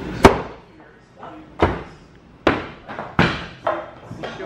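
Throwing axes hitting wooden target boards: five sharp knocks, the first and loudest about a quarter second in, each dying away in a short echo.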